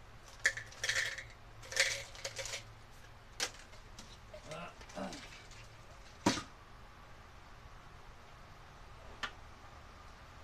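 Small metal hardware (nuts, bolts and washers) clinking and rattling as it is handled, with a run of light clinks in the first half, a sharp click about six seconds in and one more near the end.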